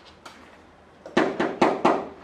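Four knocks in quick succession, about a quarter second apart, starting about a second in: the stage knocking at the gate heard after the murder of Duncan.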